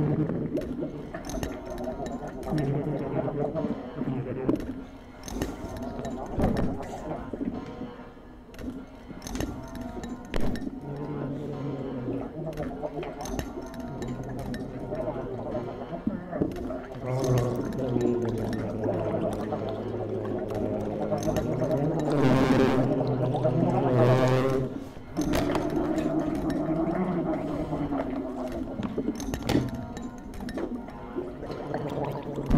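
Freely improvised music on bass clarinet and drum kit: long, low bass clarinet notes with wavering tones above them, against scattered taps and clicks on drums and cymbals. Two louder, noisier surges come a little past two-thirds of the way through.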